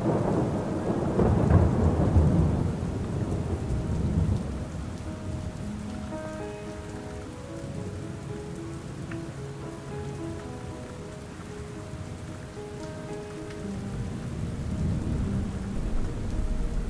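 Steady rain falling, with a loud rolling rumble of thunder over the first few seconds and another, softer rumble building near the end.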